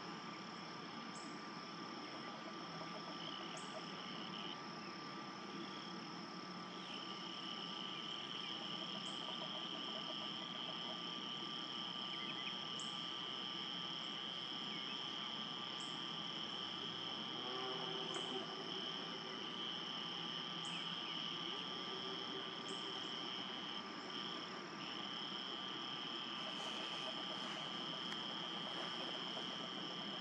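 Steady high-pitched chorus of calling insects or frogs, holding two unbroken tones, with a short higher chirp every few seconds.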